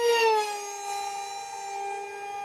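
GepRC GR2306 2750 kv brushless motor spinning a 6x3 propeller on a foam RC park jet at high throttle on a 4S battery: a high-pitched whine, loudest as the plane passes close, dropping a little in pitch about half a second in and then holding steady as it flies away.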